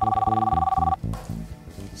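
Corded desk telephone ringing once, a ring of two steady tones lasting about a second, over background music with a steady low beat.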